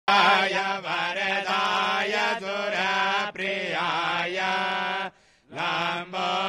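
Hindu Sanskrit mantras being chanted in a steady recitation, breaking off briefly about five seconds in.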